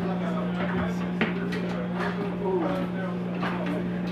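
Several people talking at once in a confined space over a steady low hum, with one sharp knock about a second in.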